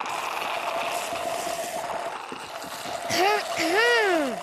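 Several drinks being slurped through straws, a steady loud gurgling hiss as a cartoon sound effect. Near the end come two short pitched sounds that rise and fall, like a voice.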